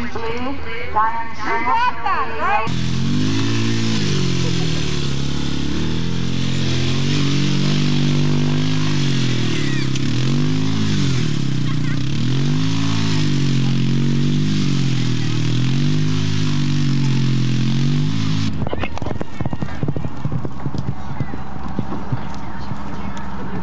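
A small ATV (four-wheeler) engine running under load, its pitch rising and falling over and over as it is driven around the poles pulling an arena drag. About 18 seconds in it cuts off, giving way to the hoofbeats of a horse galloping on dirt.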